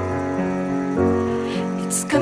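Piano playing slow, sustained chords that change twice in a pause between the sung lines of a slow ballad, with a short hiss near the end as the singer comes back in.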